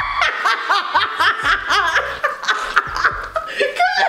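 Two people laughing hard, a quick run of short rising-and-falling "ha" bursts, with several sharp hand claps among them.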